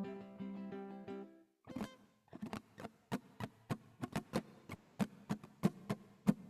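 The last strummed ukulele chord of the song ringing and fading out over the first second and a half, then sparse hand claps at an uneven pace, a few each second.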